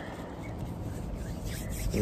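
A steady low background hiss with faint rustling noise, a little stronger near the end.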